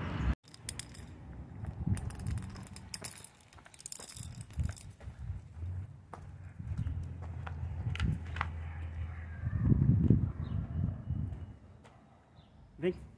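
Walking noise: irregular low thumps and rustle from footsteps and a handheld camera moving, with scattered clicks and a light jangling rattle in the first few seconds.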